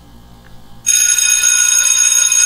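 A loud electronic ringing tone starts suddenly almost a second in and holds steady, several high tones sounding together.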